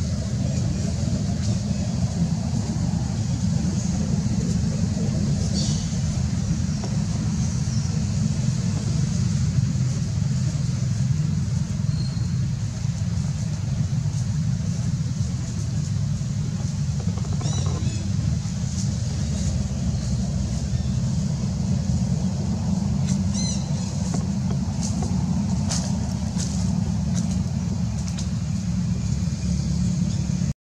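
A steady low rumble throughout, with a few faint high chirps about six, seventeen and twenty-three seconds in.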